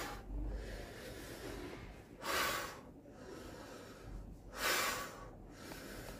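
A man's forceful breaths out through the mouth, one on each raise of the dumbbells in lateral raises: three short puffs about two and a half seconds apart.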